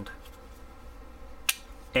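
A single sharp click about one and a half seconds in: a Buck lockback folding knife's blade being released from its lock and snapped shut.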